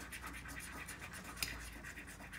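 Coins scratching the coating off lottery scratch-off tickets: a quick run of light, dry scraping strokes, with one sharper tick about one and a half seconds in.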